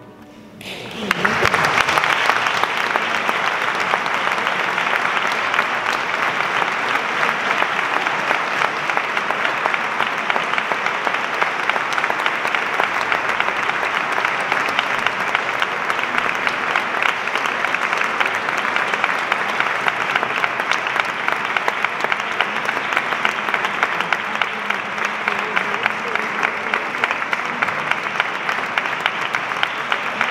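The last chord of the music fades out, then audience applause starts about a second in and continues steadily.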